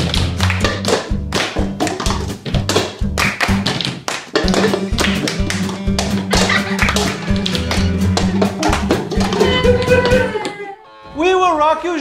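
Red plastic cups being banged down and lifted on a tabletop by several players at once in a fast rhythm, the sped-up 'extreme' round of a cup-rhythm card game, with music playing underneath. The tapping cuts off suddenly about ten and a half seconds in.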